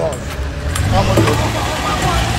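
A vehicle engine running steadily at idle, a low hum, with voices talking over it.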